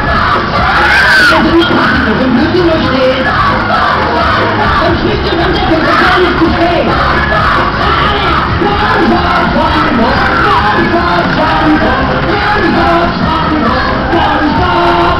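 Riders on a Musik Express fairground ride yelling and screaming together over the ride's loud music, many voices rising and falling at once.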